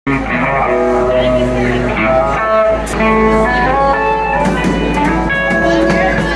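Live band playing, led by an electric guitar picking a melodic line of held single notes over a steady bass.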